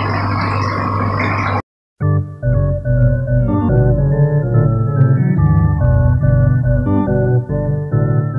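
A steady low hum and hiss from an aquarium's filter and running water, cut off after about a second and a half. About two seconds in, background instrumental music starts, with held organ-like keyboard notes.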